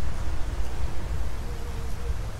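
Small hand cultivator lightly scraping and turning loose garden soil, working wildflower seed in just under the surface. A steady low rumble runs underneath.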